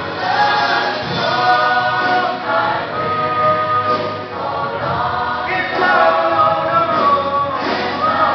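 Youth choir singing, holding long chords that shift to new notes every second or two.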